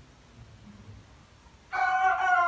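White Leghorn rooster starting to crow near the end, a loud, clear, pitched call that breaks in after a quiet stretch holding only a faint low sound.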